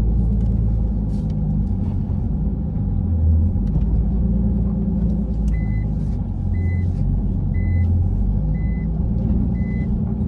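Nissan Skyline R34 GT-T's turbocharged straight-six running at low speed, heard from inside the cabin as a steady low rumble. About halfway through, a short high beep starts repeating about once a second, five times.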